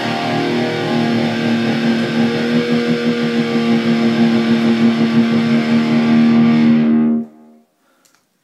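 Distorted electric guitar through an amplifier, holding one low note under fast picking as a song's closing passage, then cutting off suddenly about seven seconds in.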